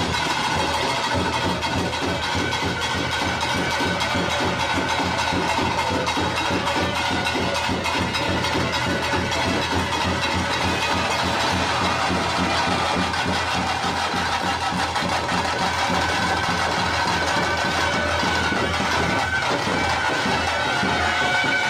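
Live traditional procession music: fast, even drumming with a reed wind instrument playing long held notes over it.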